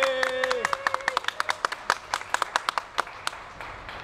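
Audience clapping in a scattered burst that thins out and fades over a few seconds. A single drawn-out vocal cheer sounds over it in the first moment.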